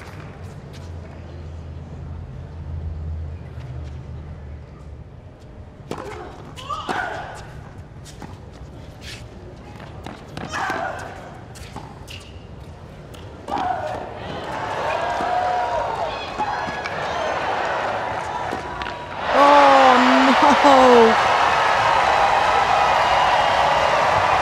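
Tennis rally on a hard court: the ball is struck back and forth in a series of sharp pops, over a low crowd murmur. After the point the crowd's noise and shouts build, then at about 19 seconds burst into loud cheering, applause and shouting.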